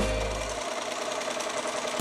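Music ends in the first half second. A sewing machine then runs steadily and faintly, stitching.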